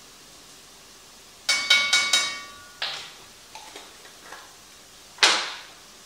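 A spoon rapped about four times in quick succession against the rim of a pot, each tap ringing briefly, to knock off the last of a dry spice. A few softer kitchen knocks follow, then one sharp knock near the end.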